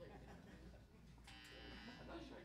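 Steady low electrical hum from the stage amplifiers, with a short electric buzz a little over a second in, like an amp or guitar cable buzzing. The room is otherwise near silent, between songs.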